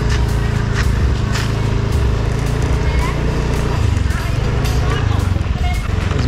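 Small motorbike engine running steadily while it is ridden.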